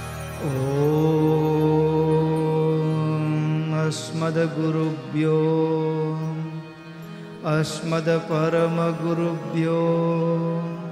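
Male voice chanting Sanskrit verses into a microphone, holding long, steady melodic notes of a few seconds each with brief breaks between phrases.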